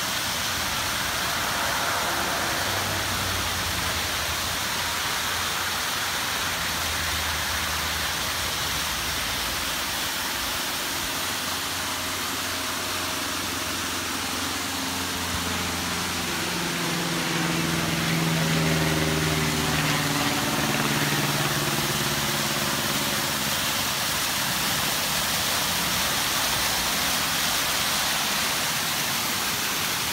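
Waterfall pouring down a rock face: a steady rush of falling, splashing water. Faint low droning tones join it for several seconds past the middle.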